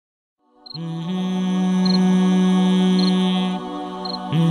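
A cappella nasheed intro: a low vocal drone starts under a second in and holds one steady note, stepping up slightly just after a second and easing off near the end. Faint short high ticks come about once a second.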